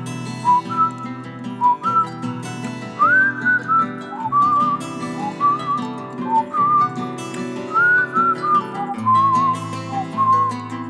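Instrumental intro of a Hindi film song: a whistled melody with sliding, wavering notes over sustained chords and a bass line. The bass comes in stronger near the end.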